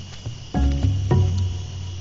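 A steady high insect trill, like crickets, under background music whose deep low notes swell in about half a second in and again a moment later.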